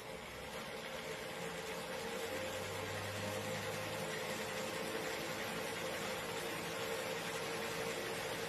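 Electric motor of a battery-converted bicycle running steadily: an even whirring hiss with a constant hum, building slightly over the first second or two and then holding level.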